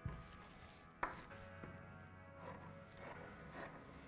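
Large tailor's shears cutting through paper pattern sheet: a few faint snips, the sharpest about a second in.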